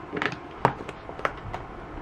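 A few sharp plastic clicks and taps as the trigger spray head is unscrewed and lifted off a plastic stain remover spray bottle and the refill pouch is brought to its mouth. The loudest click comes about two-thirds of a second in, another just past a second.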